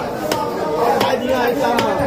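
A knife chopping a skinned bhetki (barramundi) fillet into pieces on a wooden log chopping block: three sharp chops, a little under a second apart.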